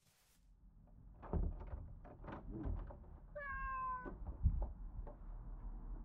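A house cat meows once, drawn out and falling slightly in pitch, a little past three seconds in, among soft thumps and knocks.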